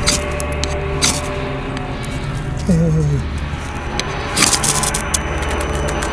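Ferro rod scraped with a knife, a few sharp strikes about a second in and a cluster near the end that throw sparks onto wood shavings, over background music. This is a renewed attempt to catch the tinder after the fire went out. A brief falling voice sound comes near the middle.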